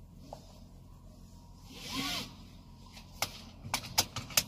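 Low steady hum inside a car stopped with its engine running. A brief hissing swell comes about halfway, and a few sharp clicks come near the end.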